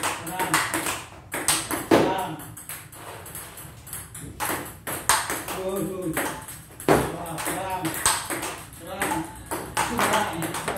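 Table tennis ball struck again and again in forehand practice: sharp clicks of the ball off the paddle and the table, coming at an uneven pace. A voice talks in the background.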